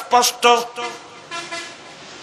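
A man preaching in Bengali through a microphone and loudspeakers, his voice breaking off about half a second in and leaving a quieter pause with only faint background sound.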